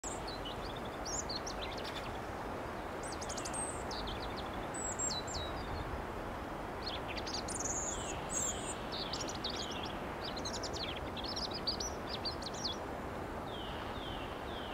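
Songbirds singing: quick, high, varied phrases follow one another over a steady low background rush. Near the end comes a run of short, falling calls, about two a second.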